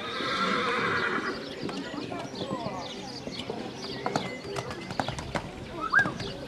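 A horse whinnies loudly for about the first second, then the hoofbeats of a horse cantering around a show-jumping course, with a few sharp knocks a little past the halfway mark.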